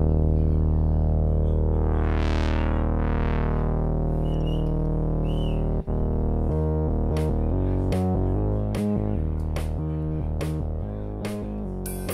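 A synthesizer starts abruptly with a loud, sustained low chord, its tone sweeping as a filter moves. From about six and a half seconds in, the synth is chopped into a rhythmic pattern and drum kit cymbal hits join in.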